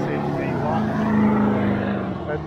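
A motor vehicle's engine going past on the road, its steady note dropping in pitch about half a second in and getting louder towards the end.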